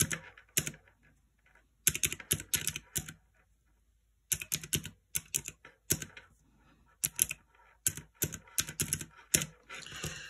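Clicky round typewriter-style keys of a desktop calculator being pressed in quick runs of key presses as a sum is entered, with short pauses between the runs.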